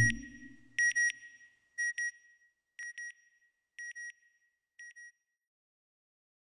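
Electronic sonar-like sound effect: short double beeps once a second, six times, each pair quieter than the last until they fade out. A deep swell dies away under the first beeps.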